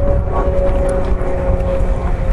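Steady drone, like a distant engine, over a continuous low rumble.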